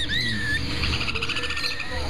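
Caged birds chirping: a couple of short arched chirps at the start, then a rapid trill of quick notes about a second in.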